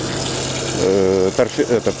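Water hissing out of a fire hose spray nozzle over a steady low engine hum, as smouldering peat is being drenched. The spray is clearest in the first second, then a man's voice comes in over it.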